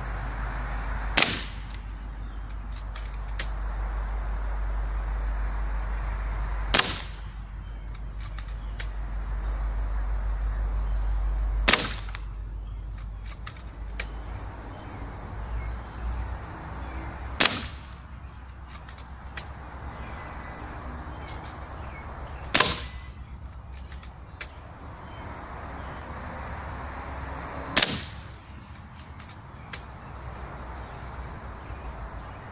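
Beeman .177 pre-charged pneumatic bullpup air rifle firing six single shots, each a sharp crack, roughly five seconds apart.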